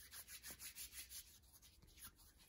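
Hands rubbing together, working in Purell hand sanitizer: faint, quick swishing strokes, several a second, easing slightly in the second half.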